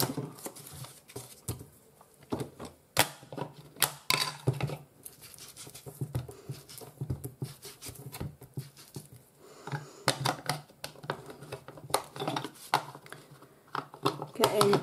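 Paper scraps rustling and being handled on a glass craft mat, with irregular taps and clicks as an ink blending tool is dabbed over them.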